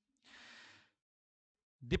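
A man draws one short breath, about half a second long, close on a headset microphone.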